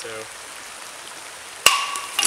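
Creek water running steadily, then about one and a half seconds in a single sharp metallic clang with a short ringing tone: a steel machete blade striking rock as it is thrown into the creek.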